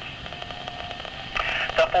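Steady hiss of a VHF weather-radio broadcast received over the air, heard in the short gap between announcements, with a faint steady tone running under it. A man's announcing voice comes back in near the end.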